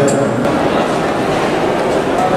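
Steady ambient noise of a busy airport terminal hall, a constant wash of hall sound with indistinct voices mixed in.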